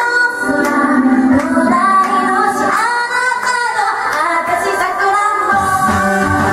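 A woman singing into a handheld microphone over a backing track. About five and a half seconds in, the accompaniment gets fuller, with bass and guitar coming in.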